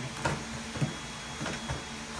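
Wrapping paper and a cardboard gift box being handled and torn open: rustling and crinkling paper with a few short, sharp crackles.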